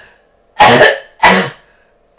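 A man coughing twice in quick succession, two short harsh coughs about two-thirds of a second apart.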